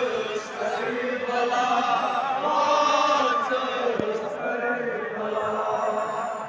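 Men's voices chanting a Kashmiri noha, a Shia mourning lament, in long held lines that waver in pitch. There is a single sharp thump about four seconds in.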